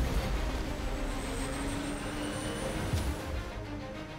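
Fighter jet engines running with a steady roar and a faint, slowly rising high whine, under background music. There is a sharp click about three seconds in, and the roar fades near the end.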